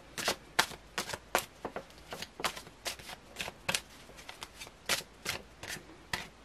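A deck of tarot cards being shuffled by hand, the cards slapping down in a quick, uneven run of strokes, about three a second.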